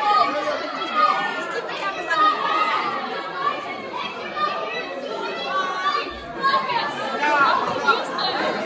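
Many voices talking over each other at once: steady crowd chatter echoing in a large room.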